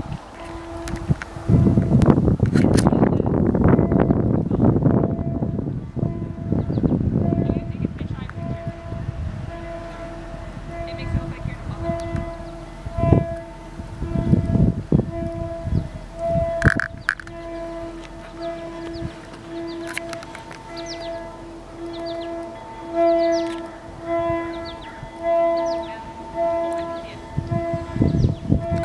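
A locomotive air horn with a fault sounds in the distance as a string of short, one-pitch honks, sometimes about one a second. The horn is broken.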